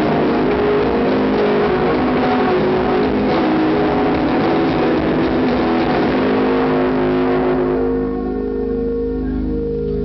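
Live rock band playing a dense wash of guitars and drums, recorded from the audience. About eight seconds in the band drops away, leaving a few held notes over a low drone.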